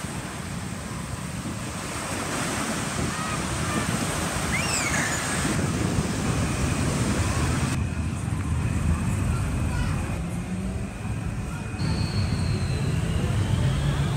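Surf washing onto a sandy beach, with wind rumbling on the microphone. About halfway through it gives way to outdoor street ambience with traffic and a thin high whine near the end.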